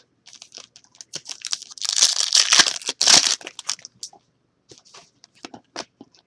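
Wrapper of a trading-card pack being torn open and crinkled, loudest for about a second and a half near the middle, among scattered small clicks and rustles of cards being handled.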